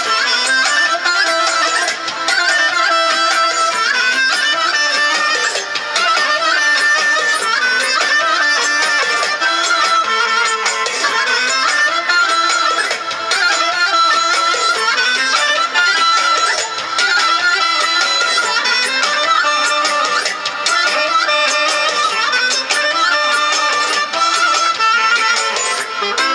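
Amplified band playing Balkan folk dance music, a wind instrument carrying a fast, ornamented melody over keyboard accompaniment.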